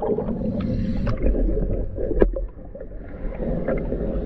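Underwater gurgling rumble heard from a diver's camera beside a boat hull, with one sharp knock a little after two seconds in; the rumble drops off soon after the knock.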